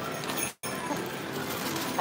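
Low-level game-arcade background noise: a steady din with faint tones from the machines. The sound drops out completely for an instant about half a second in.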